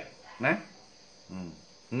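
A man's voice in brief fragments: a short syllable about half a second in, then a low hum, with quiet pauses between. A faint steady high-pitched sound runs underneath.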